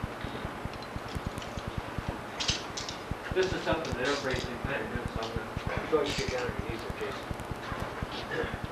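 Indistinct talking from about three seconds in, over a low crackle that runs the whole time.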